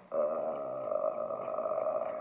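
A woman's long hesitation sound 'euh', held at one steady pitch for about two seconds.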